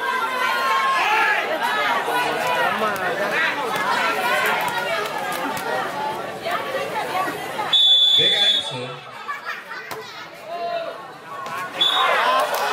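Crowd chatter, many voices talking and calling at once. About eight seconds in, a referee's whistle gives one blast of under a second, and a second blast starts at the very end.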